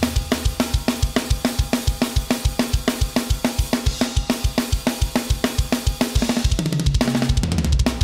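Sampled metal drum kit from EZdrummer 3's Metal Mania EZX, Nordic Metal preset, playing a fast groove. It has steady kick drum strokes about six a second under snare hits and cymbals. Near the end a tom fill falls in pitch.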